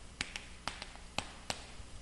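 Chalk writing on a chalkboard: a quick, irregular series of sharp taps, about seven in two seconds, as the chalk strikes the board stroke by stroke, over faint room hiss.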